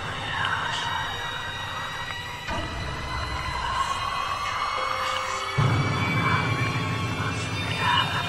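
Eerie horror-style intro music with sustained tones. Its deep low layer drops away a few seconds in and comes back strongly about five and a half seconds in.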